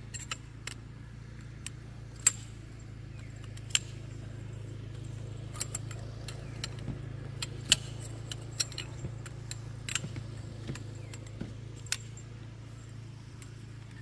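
Aluminium cot poles clinking and clicking as their sections are handled and fitted together, in sharp irregular clicks, a few of them louder than the rest. A steady low hum runs underneath.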